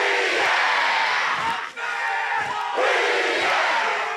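A large group performing a haka, many male voices shouting together. The shouting comes in two loud stretches, with a brief break just under two seconds in.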